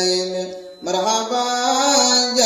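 A young man's solo voice chanting a qasida in praise of the Prophet, in long held notes that glide between pitches, with a short pause for breath just under a second in before the melody resumes.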